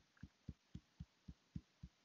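Fingertips tapping lightly and steadily on the face at the under-eye point, EFT tapping: faint, low, soft taps about four a second.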